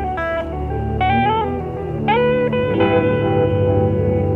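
Slow ambient relaxation music: a few long lead notes, some sliding up in pitch, over a steady low drone.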